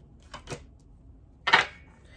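Tarot cards being handled: a few faint card clicks from the shuffle, then one short, sharp card sound about one and a half seconds in as a card is drawn from the deck.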